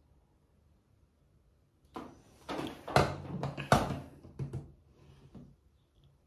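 Knocks and clatter of objects being handled and set down, starting about two seconds in; the two sharpest knocks come close together in the middle, then a few lighter ones die away.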